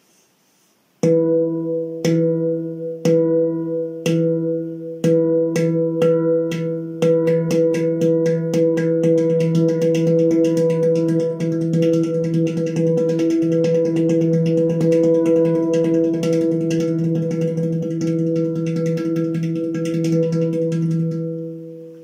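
Handpan's central ding note struck with alternating hands, starting at about one stroke a second and speeding up in steps until, about ten seconds in, the strokes merge into a continuous ringing roll that sustains the note. The roll stops just before the end.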